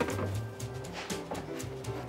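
Background music: held notes over a bass line, with light regular ticks.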